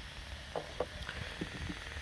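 A few faint, short taps and rustles from hands handling a plastic drone mount, over a low steady rumble.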